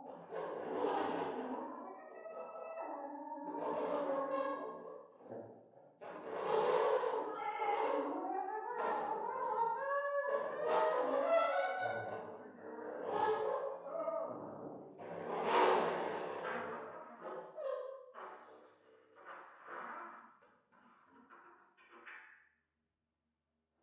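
Improvised duo of contrabass clarinet and saxhorn playing sustained and wavering pitched phrases broken by short pauses. The playing thins out near the end and closes with a brief trumpet note.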